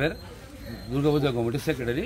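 A man's voice: one drawn-out vocal sound, about a second long, rising then falling in pitch, without clear words.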